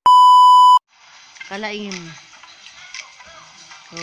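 A loud, steady test-tone beep of the kind played with colour bars, lasting just under a second and cutting off abruptly. It is followed by faint room sound and a short voice sound that falls in pitch.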